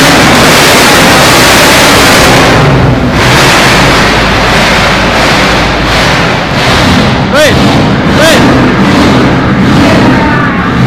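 Holden sedan's engine running very loud through its exhaust, the sound echoing around an enclosed concrete car park and overloading the recording.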